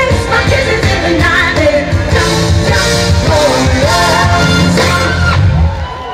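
Female vocal group singing live into microphones over loud amplified pop backing music with strong bass; the music stops a little before the end.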